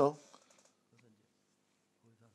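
The end of a man's spoken word through the pulpit microphones, then a pause with faint room tone and a small click about a second in.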